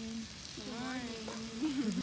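Bacon sizzling in a cast iron skillet on a camp stove, a steady high hiss. Over it a person's voice holds long wordless notes, louder than the frying.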